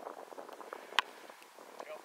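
A football being punted: one sharp thump of the foot striking the ball about a second in.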